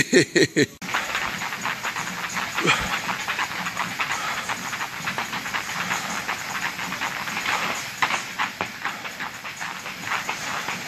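Heavy battle ropes being whipped in waves, slapping the rubber gym floor in a rapid, continuous rhythm over a hissing swish.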